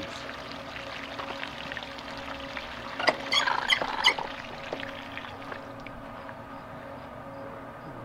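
Garden hose water pouring into a full plastic watering can and spilling over its side, a steady splashing that tapers off toward the end as the flow stops. About three seconds in there is a brief run of high, rapid squeaks.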